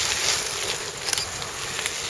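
Cyclocross bikes passing close by, their tyres rolling over a loose gravel-and-dirt track with a steady hiss and a few faint clicks.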